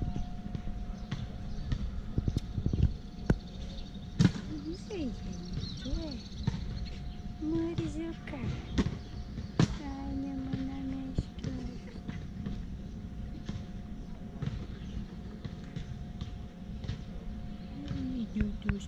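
Outdoor background of distant voices, with scattered sharp knocks and thuds over a steady low hum.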